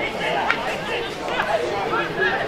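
Several voices calling and chattering at once, with players and spectators at a football ground talking over each other. A single sharp knock sounds about half a second in.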